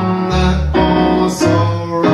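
Jazz duo playing a bossa nova: Schimmel piano chords over plucked double bass notes that change about every half second.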